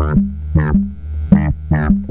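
Eurorack modular synthesizer notes shaped by the 4ms Pingable Envelope Generator's envelopes: a run of short, unevenly spaced notes that strike and die away over a steady low hum. The notes are the envelopes firing from quantized triggers, each landing on the next divided or multiplied ping clock.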